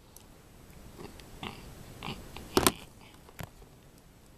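Small plastic Lego pieces being handled and pressed together: scattered light clicks and rattles, the loudest a sharp double click a little past halfway.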